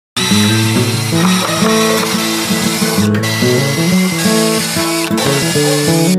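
Acoustic guitar music with a cordless drill running over it, driving screws into wooden deck boards; the drill's whine cuts out briefly twice.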